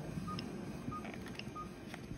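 Short, faint electronic beeps at one steady pitch, about three every two seconds, from operating-room medical equipment.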